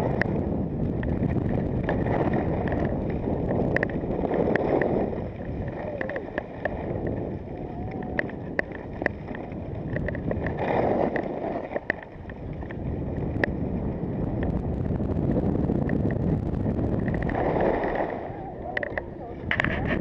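Wind rushing over a skier's camera microphone and skis scraping over packed snow during a downhill run. The noise rises and falls every few seconds, with scattered sharp clicks.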